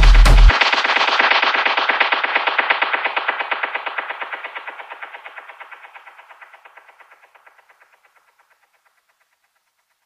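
Electronic dance music whose bass cuts out about half a second in, leaving a rapid stuttering repeat of short hits, several a second, that fades away over about eight seconds into silence.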